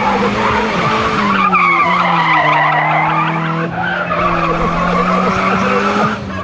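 Drift car's engine held at high revs in a steady drone with small dips in pitch, over the noise of its tyres skidding as it slides sideways.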